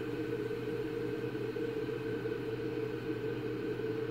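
Steady background hum with no other sound.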